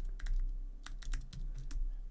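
Computer keyboard typing: an irregular run of quick key clicks as a word is typed.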